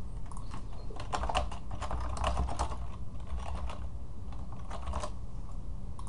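Typing on a computer keyboard: a quick run of keystrokes that stops about five seconds in.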